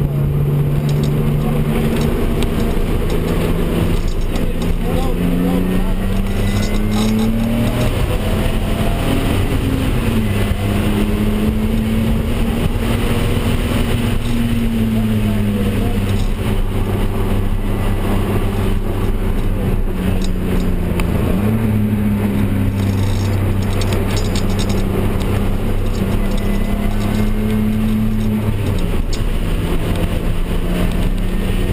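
Turbocharged BMW M3 straight-six, fitted with a stage 2 turbo kit, running hard at track speed, heard from inside the cabin. Its pitch climbs and drops back several times as it is driven through the gears and corners, over steady road and wind noise.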